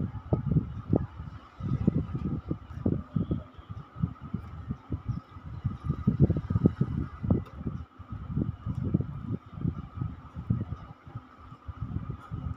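A man's low, wordless vocal sounds in short irregular bursts, made as he mouths along while signing, over a steady faint hum.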